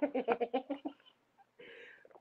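Laughter: a run of short, quick laughing pulses that fades out within the first second, followed by a brief soft hiss near the end.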